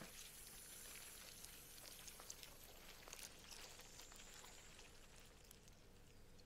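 Near silence: a faint high hiss with scattered soft clicks.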